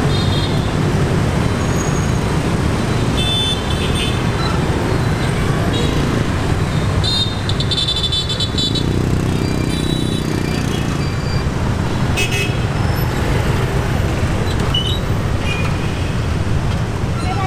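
Dense city traffic, mostly motorbikes and scooters with some cars, running in a steady low engine rumble. Several short horn toots sound over it, the loudest about seven seconds in, lasting about a second.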